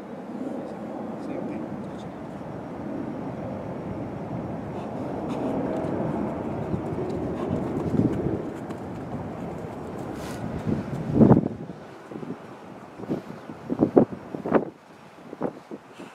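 A low outdoor rumble builds through the first half. Then, from about two-thirds of the way in, comes a run of sharp thuds from a goalkeeper's quick footwork steps on artificial turf.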